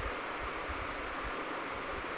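Steady background hiss of room tone, with no distinct sound standing out.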